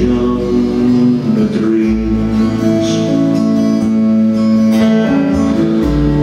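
Live acoustic folk band playing an instrumental passage: strummed acoustic guitars under long, held melody notes, without singing.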